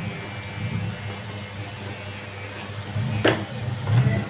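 Cordless electric hair clipper running while cutting short hair, with one short click about three seconds in.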